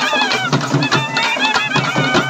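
Karagattam folk music: thavil barrel drums beaten in quick strokes under a high, wavering reed-pipe melody.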